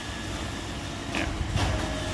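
iRobot Roomba e5 robot vacuum running as it follows close along an edge, its motor and brushes giving a steady low hum.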